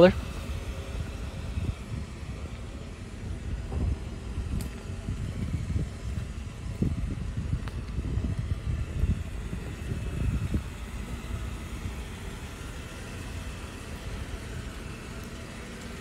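Low, uneven outdoor rumble that rises and falls, with no clear engine note.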